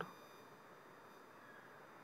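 Near silence: a faint hiss from the recording with thin, steady high-pitched electronic tones.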